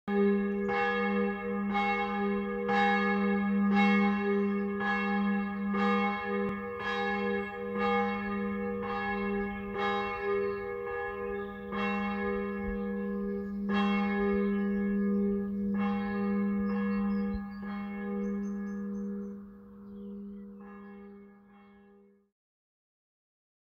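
A church bell tolling, struck about once a second, its low hum ringing on steadily between strikes; the strikes thin out and the ringing fades away near the end.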